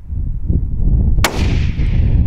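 A single hunting-rifle shot about a second in, its report echoing and fading away over most of a second.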